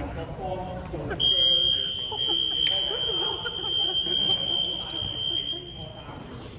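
Gym game buzzer sounding one steady, high electronic tone for about four and a half seconds, starting about a second in, over voices in the hall.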